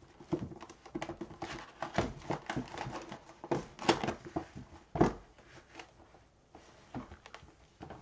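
Plastic shrink wrap being torn and crinkled off a cardboard box by gloved hands, with the box's flaps pulled open. It is a busy run of crackling and rustling with a knock about five seconds in, then a few scattered crinkles.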